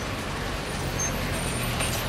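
Mitsubishi Pajero SUV driving slowly past at close range, engine and tyres on the street. Its low engine hum swells about halfway through as it goes by.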